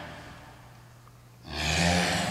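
A person's forceful exhale with a low voice in it, timed with each upward dumbbell punch. One breath fades out in the first half second, and the next starts sharply about one and a half seconds in.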